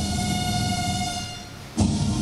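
One long held note with a clear, horn-like pitch that fades away over its last half second. Just before the end the sound changes abruptly to busier background sound.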